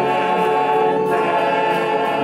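A church choir singing a gospel worship song with a female lead vocalist on microphone, holding sustained notes with vibrato.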